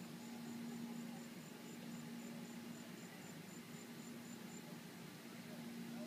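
Faint cricket chirping, a steady run of short high chirps at about four a second that stops about four and a half seconds in, over a steady low hum.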